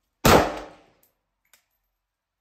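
A single semi-automatic rifle shot from a WASR AK fitted with a KNS adjustable gas piston, a sharp crack about a quarter second in that rings off the walls for under a second. A faint click follows about a second later.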